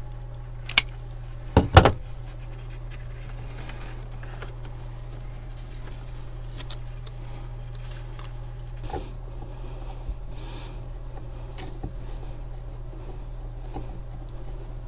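A self-adjusting wire stripper-crimper snaps shut on a blue insulated crimp terminal. It gives a sharp click, then a louder double snap under a second later. Quiet handling of wire and plug follows, with a few faint ticks, over a steady low hum.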